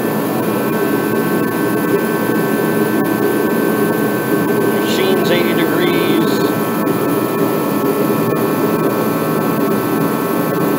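Craftsman torpedo-style forced-air kerosene heater running at full burn: a loud, steady rush from its fan and burner, with a steady high whine over it.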